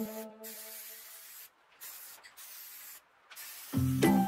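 Aerosol spray can hissing in several short sprays with brief breaks between them.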